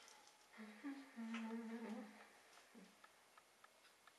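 A woman humming softly under her breath: a short rising note, then a longer held one lasting about a second and a half. Faint light clicks are heard around it.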